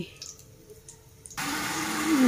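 Jaggery syrup poured through a mesh strainer into a pan of hot oil, setting off a steady sizzling hiss that starts suddenly about a second and a half in, after a fairly quiet start.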